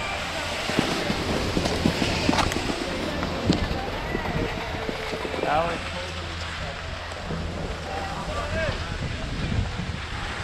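Wind buffeting the microphone of a moving skier's camera, with skis sliding over packed snow, and distant voices of people around.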